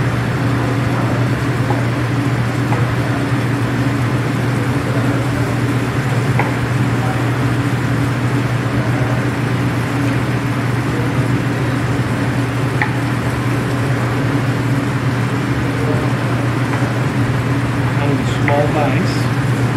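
A steady low mechanical hum with an even hiss, like a kitchen ventilation fan, with a few faint knife taps on a cutting board as boiled potatoes are cut into chunks.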